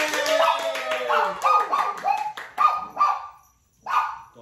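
Clapping with excited high-pitched calls, first a long falling one and then a quick run of short ones, stopping about half a second before the end.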